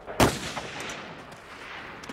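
A single rifle shot fired at a distant target, a sharp crack about a fifth of a second in, with its echo dying away over about a second.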